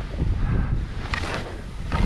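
Wind buffeting the camera microphone of a skier moving fast down a steep powder slope, with skis hissing through the snow, most strongly about a second in.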